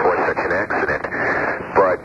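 Speech only: a voice talking over a thin, telephone-like radio line.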